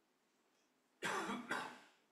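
A person coughing twice in quick succession, about a second in, the second cough half a second after the first.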